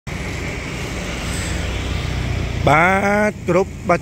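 A car engine idling with a steady low rumble. A man starts talking about two and a half seconds in.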